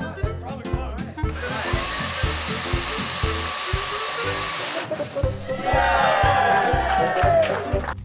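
Background music with a steady beat over a robotics demonstration. About a second in, a whirring rush from the competition robot's motors starts suddenly and stops suddenly about three and a half seconds later. Then several voices cheer and shout until near the end.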